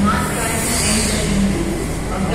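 Delhi Metro train standing at the platform, running with a steady hum, with a brief hiss about half a second in, over the chatter of voices on the platform.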